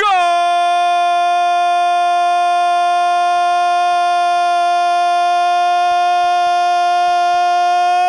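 A man's drawn-out goal cry, "Goooool", held loud on one steady pitch, swelling slightly just before it breaks off at the very end.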